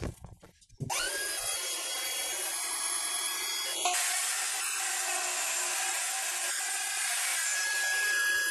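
DeWALT jobsite table saw starting up about a second in and then running steadily with a whine, as its blade trims the plywood sled's edge square to the blade.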